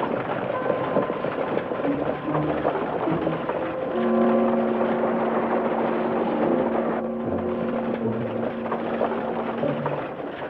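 Stagecoach pulled by a galloping horse team, a continuous noisy rumble of hooves and wheels, under background music that holds long sustained notes from about four seconds in.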